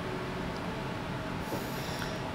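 Soft background music score of sustained low notes holding steady, under a quiet dialogue pause.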